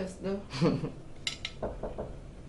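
Tableware clinking: a few light clinks of cutlery against dishes, then a couple of duller knocks, with a voice briefly at the start.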